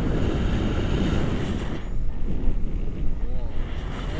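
Airflow buffeting an action camera's microphone in tandem paraglider flight: a loud, steady low rumble of wind noise. A short wavering voice-like sound comes through about three seconds in.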